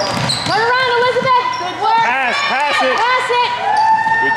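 Sneakers squeaking again and again on a hardwood gym floor as players cut and stop, some squeals short and arching, one held longer near the end, with a basketball being dribbled.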